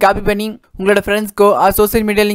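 Speech only: a narrator talking continuously, with one brief pause about half a second in.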